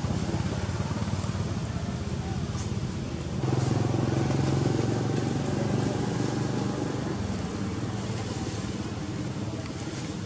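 A motor vehicle engine running steadily, growing louder about three and a half seconds in and easing off after, with voices in the background.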